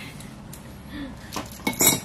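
A few sharp, light clicks close together, loudest just before the end, over a faint low hum.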